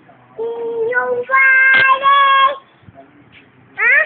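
A young boy singing: a held note, then a higher, louder note held for over a second, and a quick upward swoop of his voice near the end.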